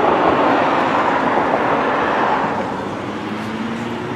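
Steady rushing noise of passing road traffic, easing off about two and a half seconds in.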